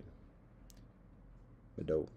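Pause in a man's talk: a low steady hum, one faint click under a second in, then a short voiced murmur from him near the end.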